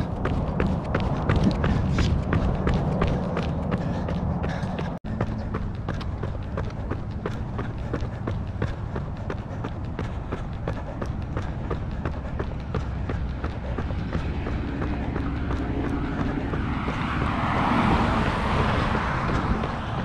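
Running footsteps of Nike Vaporfly Next% 2 carbon-plated racing shoes on asphalt, a quick steady patter over a low rumble of movement and air noise. The sound cuts out for an instant about five seconds in. Near the end a louder rush of noise swells and fades.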